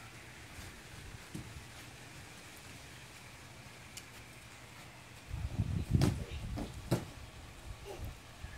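Bare feet thudding on the ground and a folding gymnastics mat during a running round-off. The thuds start about five seconds in, the loudest about six seconds in and a sharp one about a second later at the landing; before that only a faint low rumble.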